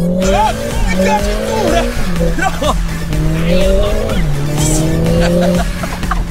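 Mercedes-AMG A45 S's turbocharged four-cylinder accelerating hard, heard from inside the cabin: revs climb, then drop sharply at an upshift about two seconds in, and drop again at a second upshift about four seconds in before holding steady.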